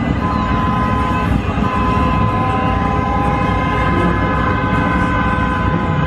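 Horns sounding long, steady notes at a few different pitches that overlap, over a dense low rumble of crowd and street noise.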